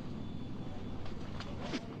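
Steady outdoor street ambience with a low rumble of traffic, from a TV episode's soundtrack.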